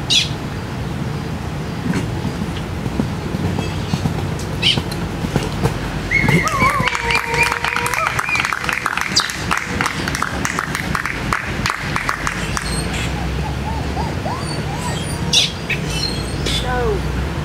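Open-air ambience: a steady low rumble, a distant voice about six seconds in, a run of sharp clicks over the next few seconds, and short bird chirps near the end.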